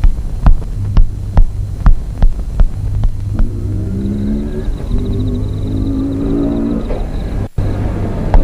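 Film soundtrack of a night scene: a steady low rumble with a regular throbbing pulse about twice a second, like a heartbeat. From about three seconds in, several held low tones join it, and the sound cuts out for a moment near the end.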